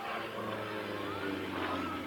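Yakovlev Yak-55 aerobatic plane's nine-cylinder radial engine and propeller, heard from the ground during a vertical climb as a steady drone whose pitch rises partway through.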